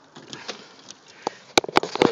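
Car door being opened: a few quiet ticks of handling, then sharp clicks of the handle and latch near the end.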